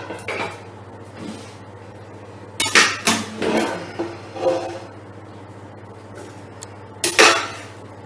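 A utensil clanking and scraping against a stainless-steel stockpot as cooked veal is lifted out into a second pot. There is a cluster of clanks about two and a half seconds in and another sharp one near the end.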